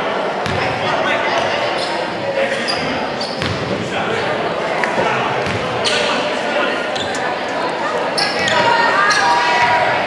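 Basketball bouncing on a hardwood gym floor, with repeated sharp knocks and short high squeaks, over players and spectators calling out. Everything rings in the echo of a large gymnasium.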